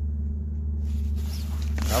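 Zipper on a soft-sided fabric suitcase being pulled open with a rasping sound starting about a second in, and the fabric lid rustling as it is lifted. A steady low hum runs underneath.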